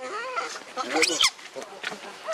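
Macaques calling: a run of short, wavering high calls that climb to a shrill squeal about a second in.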